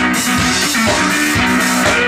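Live blues-rock band playing loudly: a resonator guitar holding low notes over a drum kit beat, in an instrumental passage.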